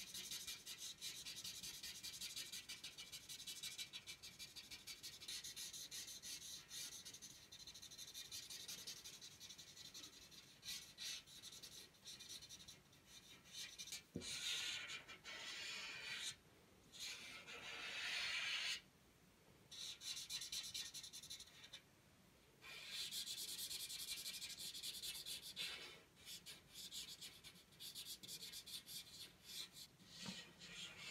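Felt-tip marker rubbing on paper in quick back-and-forth strokes, colouring in a shape: a faint, scratchy hiss that stops and starts, with a pause of a few seconds just after the middle.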